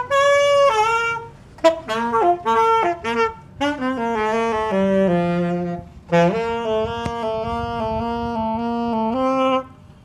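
Solo saxophone playing a melody: short phrases of separate notes with brief breaths between them, then a long held note from about six seconds in until shortly before the end, stepping up a little just before it stops.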